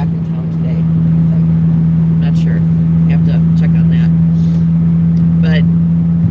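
Inside a moving car's cabin: a steady low hum with engine and road rumble while driving, unchanging throughout.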